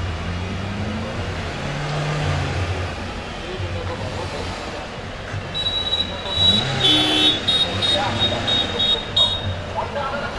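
Street traffic with car engines running and passing, one engine rising and falling in pitch. From about halfway in, car horns sound: a longer honk, then a string of short, high toots.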